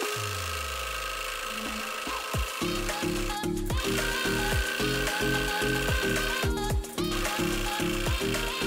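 Background music: a falling bass sweep at the start, then a steady beat with a repeating bass line from about two and a half seconds in.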